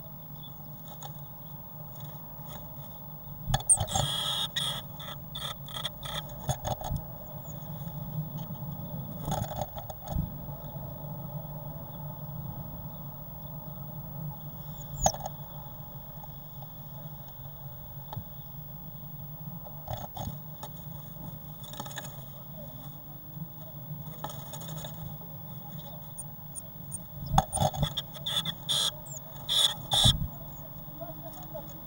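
Blue tits moving in and at a wooden nest box: scattered bursts of scratching and scraping on the wood and nest material, loudest about four seconds in and again near the end as a bird flutters into the box, over a steady hum.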